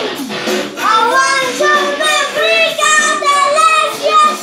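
A young boy singing a rock song into a handheld karaoke microphone, over music. His voice slides down in pitch just after the start, then carries held sung notes from about a second in.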